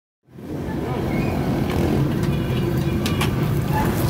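Steady low rumble of a busy street-side food stall with traffic, cutting in abruptly about a quarter second in, with a few short clicks and clatters over it.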